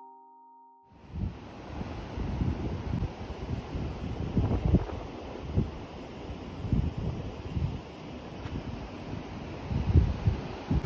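Surf breaking on a sandy beach, with wind gusting against the microphone; it starts suddenly about a second in.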